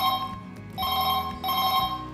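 Telephone ring tone: an electronic two-pitch ring sounding in short bursts of about half a second, one burst ending just after the start and then a double ring about a second in.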